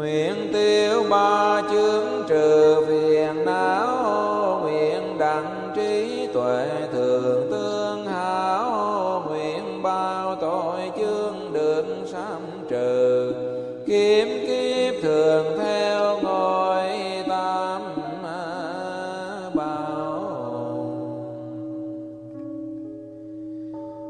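Melodic Vietnamese Buddhist chanting: a drawn-out sung line that glides and wavers in pitch over a steady drone, easing off near the end.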